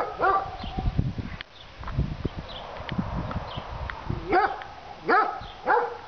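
Dog barking: a bark or two right at the start, then after a pause three more short barks in quick succession near the end.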